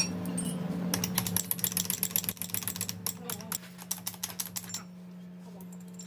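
Rapid metallic clicking and clinking of steel transmission parts (snap rings, gears and shafts) being handled during assembly. The clicking is dense in the first half, thins out and stops near the end, over a steady low hum.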